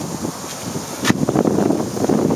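Willys Hurricane four-cylinder F-head engine of a 1953 M38A1 Jeep idling, with wind buffeting the microphone and a single click about halfway through.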